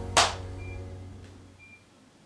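Faint, fading musical tones with a short burst of noise just after the start and two brief high beeps, dying away.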